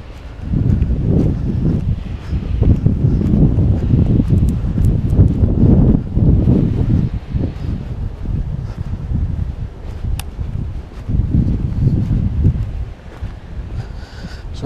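Wind buffeting the microphone: a loud, gusting low rumble that swells and dips.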